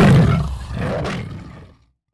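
A big cat's roar sound effect tailing off, with a second, weaker swell about a second in, then fading out before the end.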